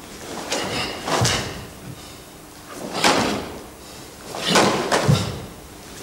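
Karate kata Jitte being performed: a cotton karate gi snapping with each technique and bare feet landing on a wooden floor. About five sudden swishing strokes come at uneven gaps, a few with a dull thud underneath.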